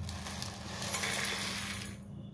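Whole spices (coriander seeds, black peppercorns and dried red chillies) poured from a plastic container into a stainless-steel mixer-grinder jar: a continuous rattling hiss of small seeds landing on metal, fuller from about halfway through and fading near the end.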